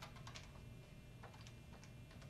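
Faint keystrokes on a computer keyboard: a few irregular key clicks, a small cluster near the start and more in the second half, as a filename is typed.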